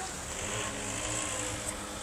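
Three-litre V6 engine of a trike running steadily off to one side, a low even hum with no revving.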